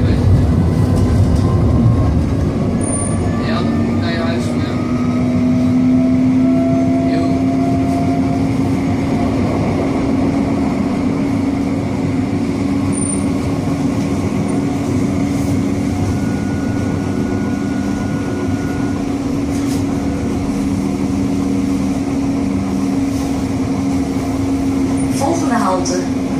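Inside a moving Siemens Avenio low-floor electric tram: steady running noise with an electric motor whine that rises slightly in pitch a few seconds in, then holds level, with a few light clicks and rattles.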